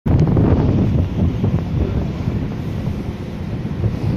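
Strong wind buffeting the microphone in gusts, over rough sea churning against the hull.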